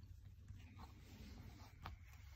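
Near silence: faint rustling of the phone being handled, with one sharp click near the end.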